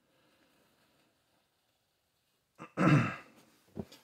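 A man clears his throat once, about three seconds in, after a stretch of near quiet.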